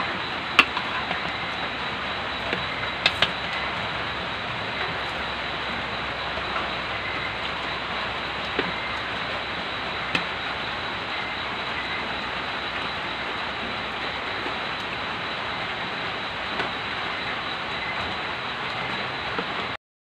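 A steady, even hiss, with a few light clicks of spoons and forks against plates. The sound cuts off suddenly just before the end.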